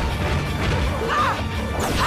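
Crashing impact sound effects over action music, with a short gliding tone about a second in.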